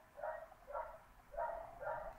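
A dog barking faintly, a quick run of about five barks at roughly two a second.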